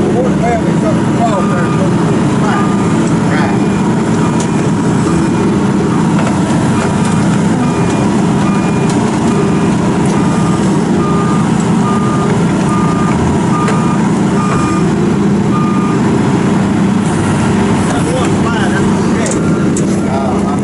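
Diesel engine of a tracked logging machine running steadily close by. A backup alarm beeps repeatedly from about a second and a half in, stopping about four seconds before the end.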